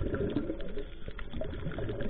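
Scuba diver's exhaled bubbles gurgling out of the regulator, heard underwater as a continuous rumble full of small irregular crackles.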